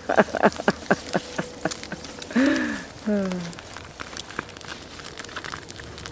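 Laughter trailing off, then a sigh, over irregular crinkling and rustling from wet tent fabric being handled and shaken out to dry.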